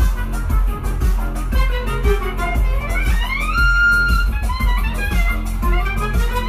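Live electronic dance music with a heavy, steady bass beat, with live violin, clarinet and trumpet playing over it. About three seconds in, one line glides up to a held high note.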